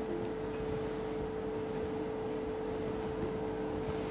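Steady room tone: an even hiss with a constant mid-pitched hum and no distinct events.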